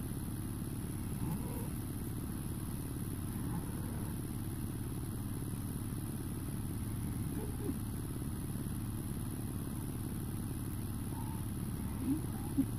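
Fiat 72-93 tractor's diesel engine idling, a steady low rumble.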